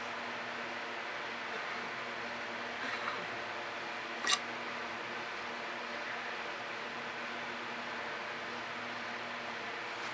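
Steady low hum and hiss of room noise, with a faint brief sound about three seconds in and one short, sharp tick a little after four seconds.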